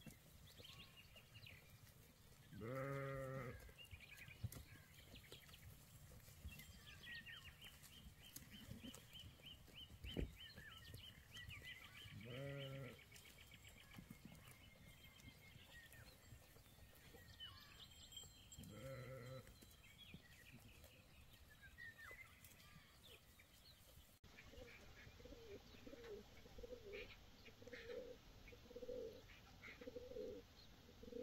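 Faint sheep bleating three times, several seconds apart, with small birds twittering between the calls. Near the end the sound changes to pigeons cooing in a steady series, about one coo a second.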